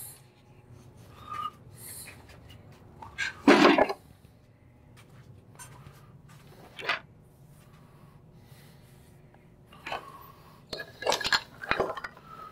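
Wooden pieces and tools being handled and set down on a workbench: scattered knocks and clinks, a louder clatter about three and a half seconds in, and a quick run of knocks near the end.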